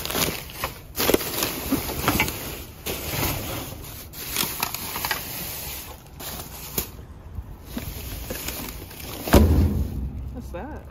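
Clear plastic trash bags rustling and crinkling as they are handled and pushed aside inside a metal dumpster, with a thump near the end.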